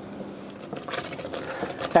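Wooden spoon stirring milk and rice in a stainless steel saucepan, a soft continuous scraping and sloshing that grows a little louder in the second half.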